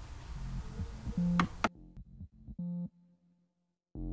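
Background synthesizer music: a few sustained keyboard-like notes that thin out and stop, leaving near silence for the last second.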